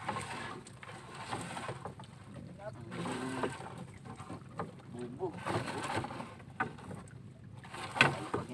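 Water splashing and dripping off a net shrimp trap as it is hauled out of the sea into a small wooden boat, with irregular knocks and rustles from handling the net and its frame.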